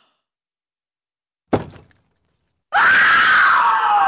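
A single sharp thump about one and a half seconds in, then a loud hiss with a wavering, wailing cry that slides downward in pitch: a cartoon vampire shrieking as he burns up in sunlight.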